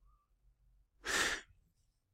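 A single breath drawn or let out close to the microphone, about half a second long, around a second in; otherwise near silence.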